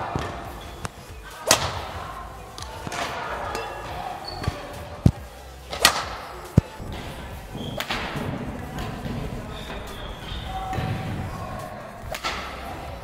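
Badminton racket striking a shuttlecock in a series of backhand clears: a few sharp hits, two of them close together near the middle, each echoing in a large hall.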